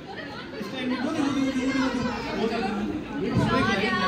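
Party guests chattering: many voices talking at once, overlapping, with no single speaker standing out.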